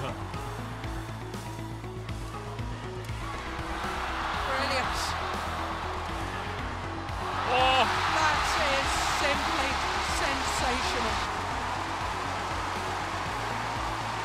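Background music over badminton match sound. About eight seconds in, the arena crowd rises into cheering with a shouted voice as a rally ends, then the noise eases back under the music.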